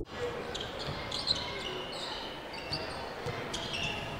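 Live basketball court sound: a ball bouncing on the hardwood and sneakers squeaking in short bursts as players move, over the hum of the arena.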